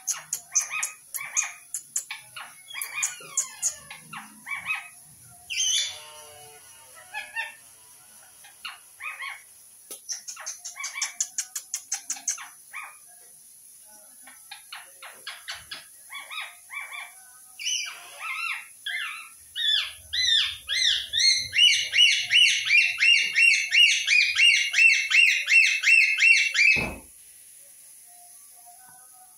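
Indian ringneck parakeet chattering with short chirps and calls, then a loud run of rapidly repeated screeches that stops abruptly near the end.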